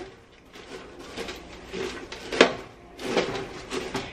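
A metal spoon stirring caramel-coated popcorn in a roasting pan: rustling and scraping, with one sharp clink of the spoon against the pan about two and a half seconds in.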